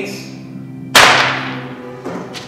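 A single sharp crack about a second in, ringing out and fading over the following second.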